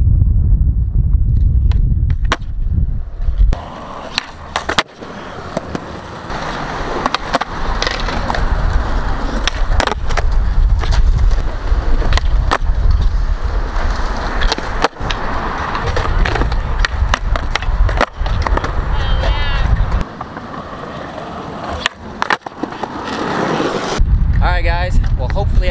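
Skateboard urethane wheels rolling on concrete, broken by repeated sharp clacks of the tail popping and the board landing as kickflips are tried on banks and ledges.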